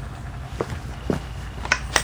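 A few light clicks and knocks, about four in under two seconds, from tools and metal pipe fittings being handled, over a steady low rumble.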